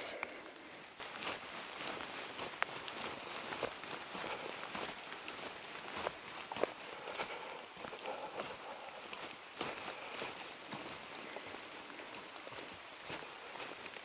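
Footsteps on a wet forest dirt trail, soft and irregular, with a few scattered light clicks over a steady soft hiss.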